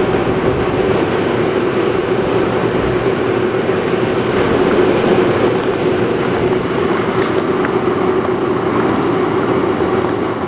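A steady, loud mechanical drone with a constant low hum.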